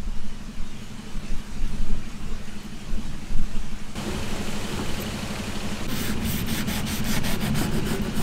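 A knife scoring slits through the scaly skin of a black pomfret on a steel tray, with rasping scrapes that come quick and repeated in the last couple of seconds. A low steady hum runs underneath.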